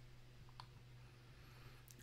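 Near silence: a low steady electrical hum with a few faint clicks.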